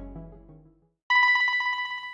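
Background music fades out. About a second in, a ringing tone starts: it trills rapidly, like an electric bell, and lasts just over a second.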